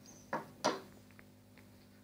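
Two short clicks about a third of a second apart, then a few fainter ticks: close handling noise.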